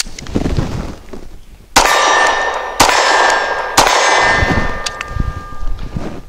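Three 9mm pistol shots about a second apart from an HK P30SK. Each is followed by the clang of a hit steel target, which rings on after the shot.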